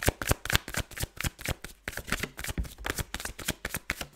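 A deck of tarot cards being hand-shuffled: a rapid, uneven run of sharp card snaps and taps, several a second, without pause.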